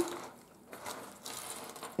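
Quiet handling of a thick handmade paper junk journal as it is closed and turned in the hands: faint rustling with a couple of small clicks about a second in.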